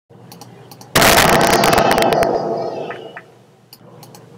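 A cartoon sound effect: a sudden loud, crackling burst of noise that starts about a second in and fades away over about two seconds.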